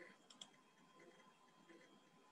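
Near silence, broken by a faint computer mouse click heard as a quick double tick about a third of a second in.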